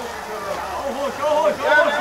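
Voices of people talking in the background; no other distinct sound stands out.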